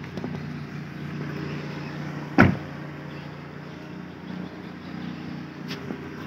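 A car door shuts with one loud thud about two and a half seconds in, over the steady low hum of the 2012 Proton Preve's 1.6-litre engine idling.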